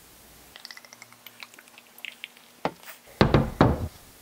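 Beer poured from a glass bottle into a glass mug, a run of faint quick glugging ticks, followed by louder thunks near the end as the glass bottle and mug are set down on a wooden table.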